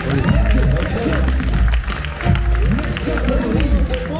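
Loud music with heavy bass playing over a sound system, with crowd voices and shouts over it.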